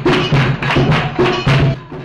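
Live percussion playing a steady beat of sharp drum strokes, about two and a half a second, stopping just before the end.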